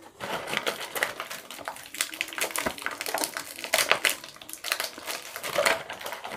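Small plastic toy figures and clear plastic packaging handled and rummaged close to the microphone: a dense run of quick clicks, clatters and crinkles, starting just after the opening.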